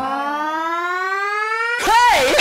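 A single electronic synth tone with a rich, buzzy edge glides slowly upward in pitch, with no beat under it. Near the end a louder wavering tone bends down and back up.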